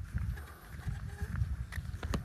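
Wind buffeting the microphone in uneven low rumbles, with a few faint clicks.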